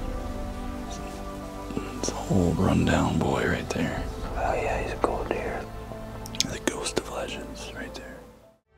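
Hushed, whispered speech over background music with steady held tones, with a few sharp clicks near the end.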